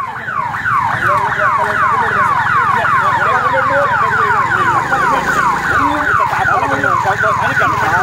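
Electronic siren sounding in rapid, repeated falling sweeps, about six a second, over a low steady hum.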